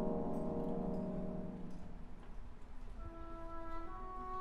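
Orchestra playing ballet music live: a held low chord fades out about halfway through, and higher sustained string notes come in about three seconds in.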